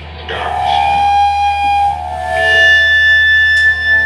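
Amplified electric guitar ringing out long sustained notes over a steady amplifier hum, starting about a third of a second in; the note changes about two seconds in, and a few sharp drum or cymbal hits come in near the end.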